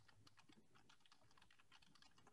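Faint typing on a computer keyboard: quick, irregular key clicks.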